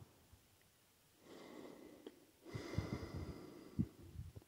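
A person breathing close to the microphone: two soft breaths, the second longer and louder, with a few faint knocks near its end.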